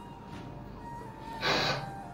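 A man weeping, with one sharp, breathy sobbing gasp about one and a half seconds in, over soft background music holding a steady tone.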